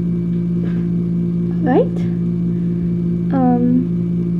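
A steady low hum with a couple of short vocal sounds from a woman over it: a brief rising-and-falling one about two seconds in and a falling one near the end.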